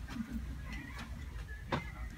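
Quiet room tone with a steady low hum and a single short click near the end.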